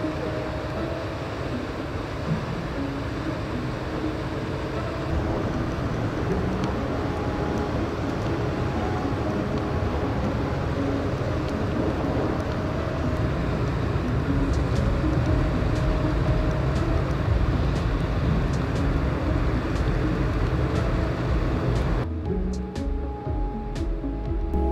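Low engine rumble of an inland motor tanker ship passing on the river, getting louder about halfway through, with background music laid over it. The sound changes abruptly near the end.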